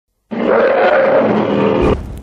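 A giant ape monster's roar sound effect: one long, loud roar that starts about a third of a second in and fades near the end.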